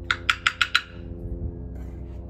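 Five quick, sharp metallic taps in the first second, a steel tool knocked against metal at the crucible furnace, over a steady low hum.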